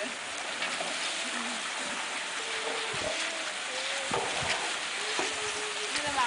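Water running in a coffee-washing channel, a steady wet hiss, with faint voices of people talking in the background and a few small knocks.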